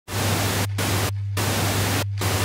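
Television static: a loud even hiss over a steady low hum, the hiss cutting out briefly twice while the hum carries on.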